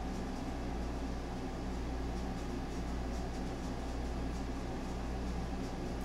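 Air conditioner running with a steady hum and hiss.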